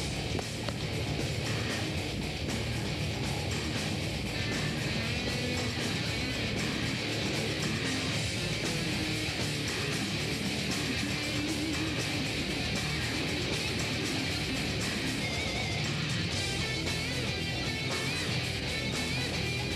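Metal band playing live at full volume: distorted electric guitar, bass guitar and drums with crashing cymbals, with no singing.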